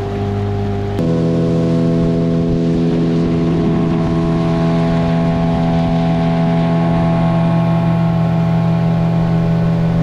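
Outboard motor running steadily at speed, a constant drone with the rush of the wake beneath it. About a second in, the engine's pitch shifts abruptly and the sound grows a little louder.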